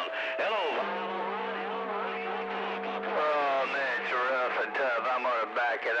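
Voices coming over a CB radio receiver, hard to make out, with a steady buzzing tone that holds for about two seconds in the middle before the talk resumes.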